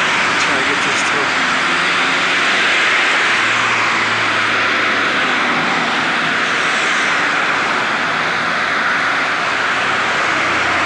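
Steady rushing street-traffic noise, with a low engine hum passing briefly a few seconds in.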